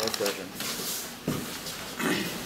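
Indistinct voices in a small, boxy room such as an elevator cabin, with a single knock about a second and a quarter in.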